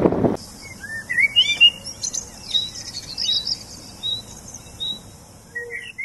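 Small songbirds chirping and singing: a run of short whistled notes rising and falling, over a fainter high twittering.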